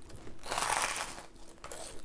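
Crisp crust of a freshly baked Yorkshire pudding crackling as a piece is torn off by hand: a crunchy crackle lasting about a second, then a few smaller crackles near the end.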